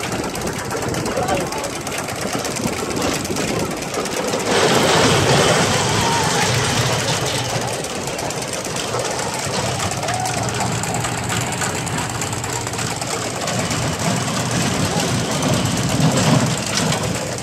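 A small roller coaster train running on its steel track with a steady rattle, growing louder about four and a half seconds in as the cars rush close by, then settling back.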